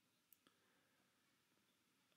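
Near silence: a pause between spoken sentences.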